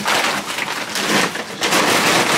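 Crackling, rustling noise from the camera being handled and rubbed against clothing close to its microphone.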